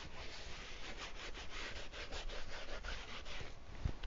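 A damp paper towel rubbing acrylic paint onto a stretched canvas in quick back-and-forth strokes, with a soft low thump near the end.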